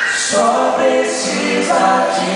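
A small group of men singing a worship song together into microphones, several voices holding sustained sung notes that shift pitch about half a second in and again near the end.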